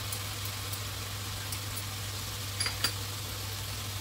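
Vegetables sizzling steadily in a nonstick wok as oyster sauce is poured in, over a steady low hum, with a few light clicks near the end.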